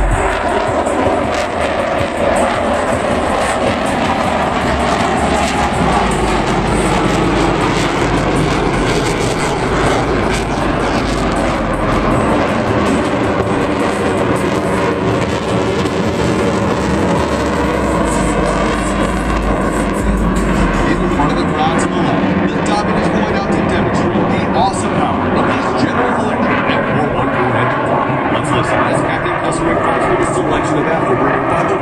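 Blue Angels F/A-18 Super Hornet jets flying past low and loud: a continuous jet-engine roar whose pitch bands bend slowly as the aircraft pass.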